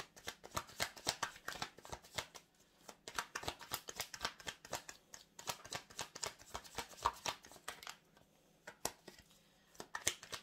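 Tarot cards being shuffled by hand: rapid runs of soft card flicks and clicks in two spells, a short one and then a longer one, stopping near the end.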